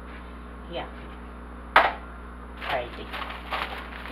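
Short spoken remarks with a single sharp knock a little under two seconds in, over a steady low hum.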